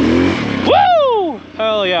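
A Kawasaki KLX dirt bike's single-cylinder four-stroke engine running as it rides down a rocky trail. Partway in, the loudest thing is a high voice call that rises quickly and then falls in pitch.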